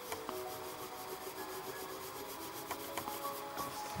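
Graphite pencil rubbing back and forth across paper as an area of the drawing is shaded in, a steady dry scratching.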